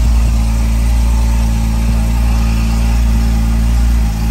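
Porsche GTS sports-car engine idling steadily with the car at a standstill, heard from inside the cabin as a constant low hum.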